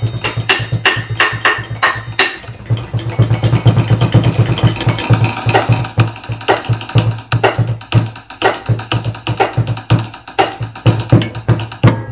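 Percussion ensemble music played on household objects: aluminium saucepans struck with drumsticks in a fast, even rhythm, with other stick strikes, over a steady low tone. The pattern changes about two seconds in.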